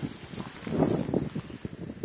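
Spade blade being driven into grassy turf: soft crunching and a few dull thuds as it cuts through roots and soil, loudest about a second in.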